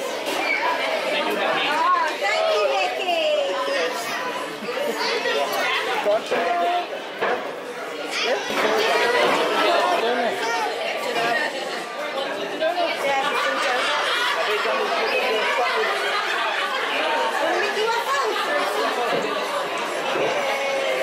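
Indistinct chatter of many diners talking at once in a large, busy restaurant dining room, with no single voice standing out.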